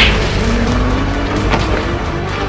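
Electric hoverboard rolling over tiled ground: a steady low rumble with a thin motor whine that slowly rises in pitch.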